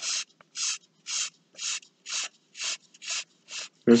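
Broad tip of a felt marker scrubbing back and forth on paper to colour in a large area, about two scratchy strokes a second.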